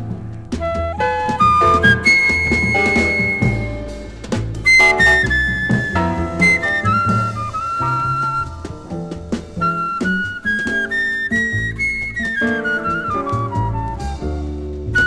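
Jazz record: a wind instrument plays a quick melodic line over drums and a walking low bass line.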